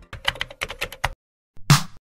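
Rapid, irregular clicking like computer-keyboard typing for about a second. After a short gap comes one loud swoosh with a low thud, a logo-reveal sound effect.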